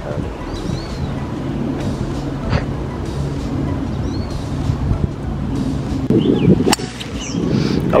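A golf driver hitting a teed ball: one sharp, short crack about two-thirds of the way through. A low steady hum sits underneath in the first half.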